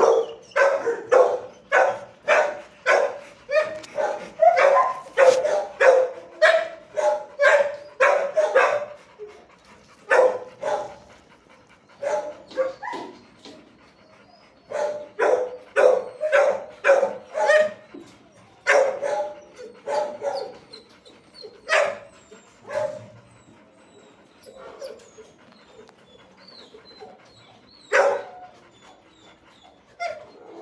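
Dogs barking in a shelter's hard-walled kennel room, the barks ringing off the walls. A rapid run of barks, about two a second, fills the first nine seconds; after that the barking comes in short bursts with longer gaps, ending in a single loud bark near the end.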